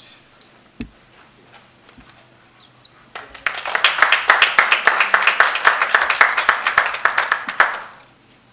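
Audience applauding, starting about three seconds in and stopping just before the end. A single low thump comes about a second in.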